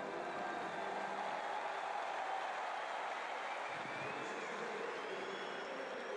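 Stadium crowd noise: a steady murmur from the spectators in the stands, with a couple of faint high, wavering tones near the middle and end.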